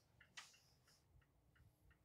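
Near silence with faint, regular ticking, about three ticks a second, typical of a car's turn-signal indicator clicking in the cabin, over a low hum of road noise.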